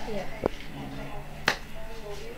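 Quiet conversational speech in a small room, with one sharp click about one and a half seconds in and a weaker one about half a second in, over a faint steady hum.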